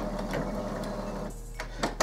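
Epson Expression Premium XP-900 inkjet printer starting to print its head alignment pattern: the print mechanism runs with a busy mechanical whir for about a second and a half, then dies down.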